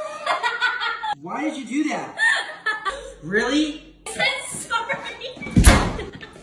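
People laughing and shrieking, with a loud thump about five and a half seconds in.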